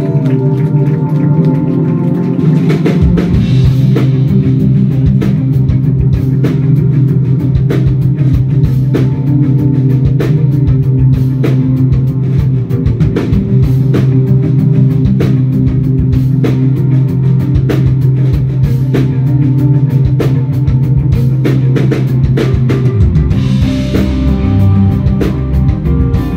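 Rock band playing live: guitars and bass holding sustained chords over steady, fast drumming. The kick drum and low end come in about three seconds in.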